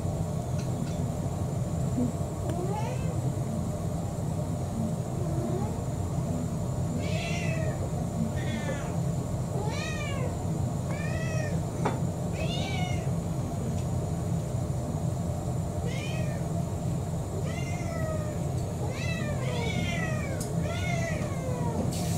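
House cats meowing for their dinner: about ten short meows, starting about seven seconds in, over a steady low hum.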